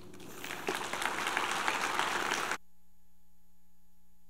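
Audience applauding, swelling over the first second, then cut off abruptly about two and a half seconds in, leaving only a faint steady electrical tone.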